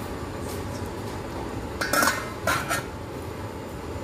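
Two ringing clinks of metal and glass, about two seconds in and again half a second later, as a steel-rimmed glass lid is set on a stainless steel couscoussier. Under them runs a steady low rumble from the pot steaming below.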